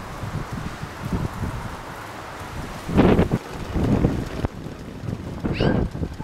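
Wind buffeting the microphone in irregular gusts, the strongest about three seconds in. A short sound rising in pitch comes near the end.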